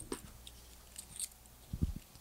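Quiet room tone with faint scattered clicks and a pair of low thumps near the end: handling noise from a handheld microphone as it is carried.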